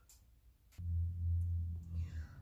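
Near silence with a couple of faint clicks, then a little under a second in a low, steady hum starts and holds.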